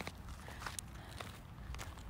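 Faint, irregular footsteps on a gravel driveway, over a low rumble of wind on the phone's microphone.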